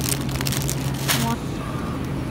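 Grocery store background: a steady low hum under a general hiss, with a short rustle of a plastic bean sprout bag and a brief voice fragment about a second in.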